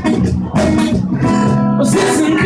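Live acoustic band: acoustic guitar strumming chords over bass guitar and cajon, with sharp strokes about half a second in and near the end. A voice sings a short 'oh' at the very end.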